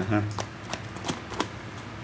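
Hands turning over and handling a used turf football boot: rustling of the shoe with about four light clicks and taps.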